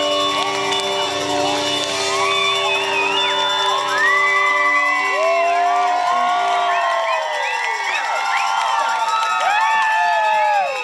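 A rock band's last held chord rings out at the end of a song and stops about halfway through, while a concert crowd cheers, whoops and shouts throughout.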